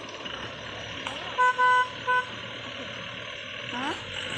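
A jeep's horn honking three times about a second and a half in: a short beep, a longer beep, then another short one.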